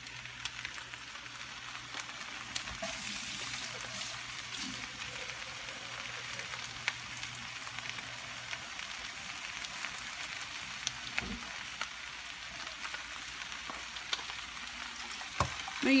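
Diced meat and flour frying in a pan under a layer of raw red chile sauce: a steady sizzling hiss with scattered small pops.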